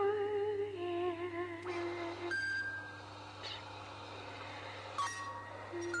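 Live music: a sustained wordless female vocal note with a wavering vibrato for about two seconds, then a brief high steady tone, a quieter stretch, and the voice returning near the end.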